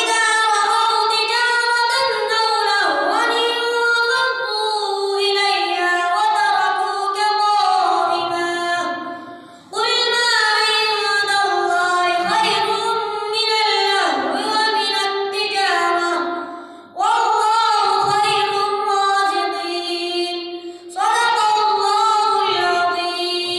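A young boy chanting Quran recitation (tilawat) in a melodic voice, picked up close by a headset microphone. Long drawn-out phrases break for breath about ten, seventeen and twenty-one seconds in.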